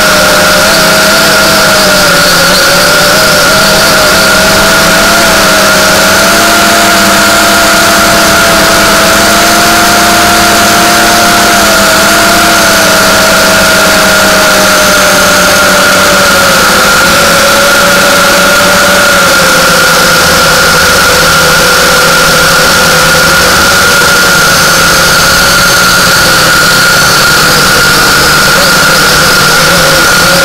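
Ares Shadow 240 drone's motors and propellers buzzing steadily and loudly through its onboard camera's microphone, with a whine whose pitch drifts slowly up and down as the throttle changes.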